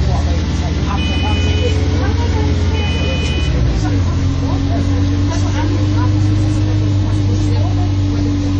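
A MAN 18.240LF single-deck bus's diesel engine and driveline running under way, heard from inside the saloon as a steady hum with a constant whine over a low rumble; the note shifts briefly about four seconds in. Two short two-tone electronic beeps sound about a second in and again about three seconds in.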